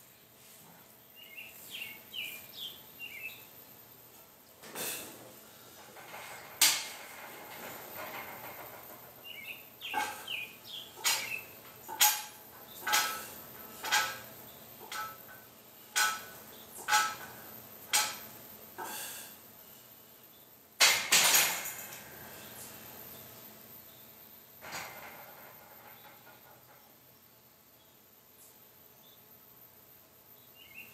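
Loaded barbell and plates clinking in a steady rhythm of about one sharp metallic clank a second through a set of bench press reps, with one louder clatter after the set. Faint bird chirps sound in the background.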